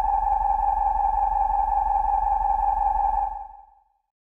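Synthesized sci-fi flying-saucer hum: one steady electronic tone with a few overtones over a low drone, fading out near the end.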